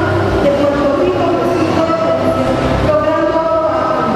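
Background music of long held, slowly changing notes, with a woman's voice reading over a PA system.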